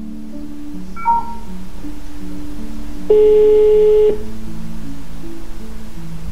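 Soft background music, with a phone's call tones over it: a short beep about a second in, then one steady ringing tone lasting about a second, the loudest sound, as an outgoing call rings.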